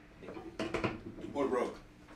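A few short clicks and knocks of hand-held music gear being handled, with a brief stretch of low talk about one and a half seconds in.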